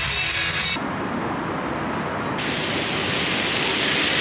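Plaza fountain jets splashing onto stone paving: a steady rushing hiss of falling water that comes in a little over two seconds in and grows louder.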